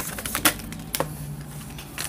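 A deck of tarot cards being shuffled by hand: a quick run of crisp card clicks in the first second, then it goes quieter with only a faint low hum.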